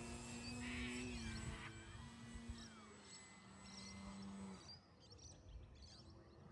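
Distant electric motor and propeller of an E-flite Extra 300 RC plane flying overhead: a faint steady drone that dips a little in pitch about a second in and cuts off about four and a half seconds in. Birds chirp faintly.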